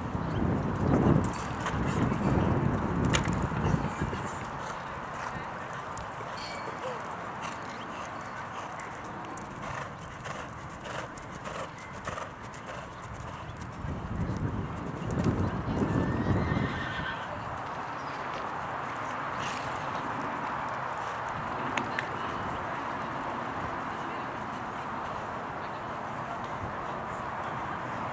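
Hoofbeats of a horse cantering and jumping on a sand arena, louder in two stretches, once near the start and again about halfway through. Faint voices in the background.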